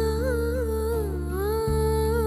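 Dramatic TV serial background score: a single slow melody line, wordless and humming-like, with gliding ornaments over sustained low chords that shift briefly about one and a half seconds in.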